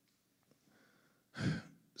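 Quiet room tone, then about a second and a half in, a single loud breath from a man close to a desk microphone, like a sigh.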